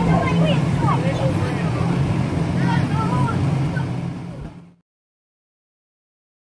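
Inflatable bounce house's electric blower running with a steady low hum, with children's high voices over it as they bounce. The sound cuts off abruptly just under five seconds in.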